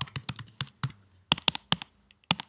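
Computer keyboard keys clicking as someone types: about a dozen quick, irregular keystrokes with a short pause about a second in.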